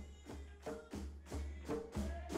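Quiet background music: a percussion beat of about three strikes a second over a low bass, growing louder toward the end.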